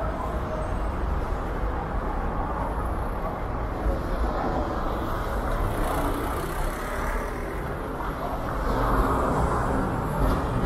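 Street traffic: cars drive past close by. A city bus goes by near the end, the loudest moment.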